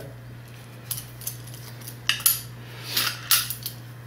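Stainless steel hard lines clinking and tapping against each other and a metal plate as they are handled: a few short, light metallic clicks, most of them in the second half.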